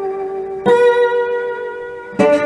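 Blues guitar playing without vocals: a held note rings on, and a new plucked note sounds about two-thirds of a second in and rings out slowly.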